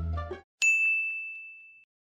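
Background music with plucked strings cuts off, then a single bright ding sound effect rings out and fades away over about a second.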